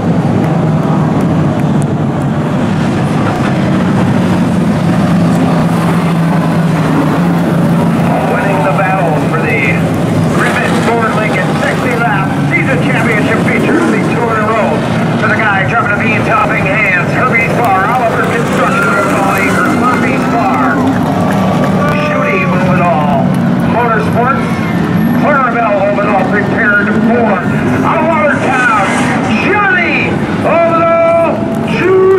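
Late model stock car engines running at a steady low pitch on the track. From about eight seconds in, people's voices are heard over them.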